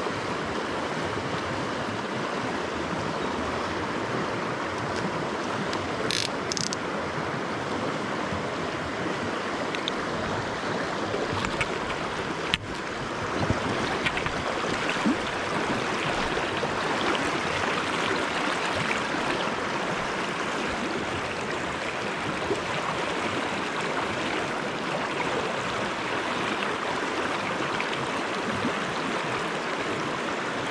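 Shallow river riffle rushing steadily over stones, with a few brief clicks about midway.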